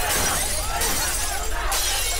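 Vehicle window glass being smashed in with wooden sticks, shattering repeatedly into flying fragments.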